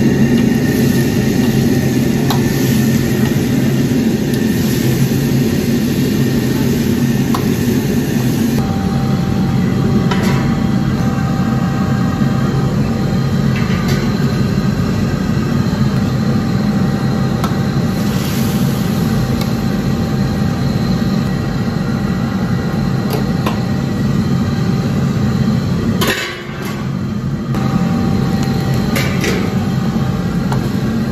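A commercial wok range's gas burner running loudly and steadily under a wok of stir-frying beef, with the food sizzling. It drops off briefly about four seconds before the end, then comes back. A few sharp clinks of a metal ladle against the wok are heard.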